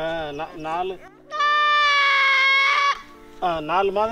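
A young goat bleating while it is held for a vaccine injection: short wavering calls, then one loud, long, high bleat of about a second and a half in the middle.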